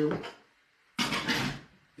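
A short scrape of kitchenware, lasting just under a second, after a man's spoken word.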